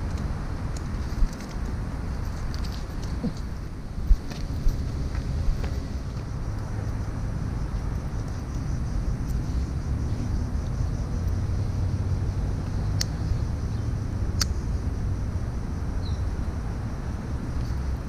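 Steady low outdoor rumble, like wind and distant traffic, with a few short sharp clicks in the first six seconds and two faint ticks later on.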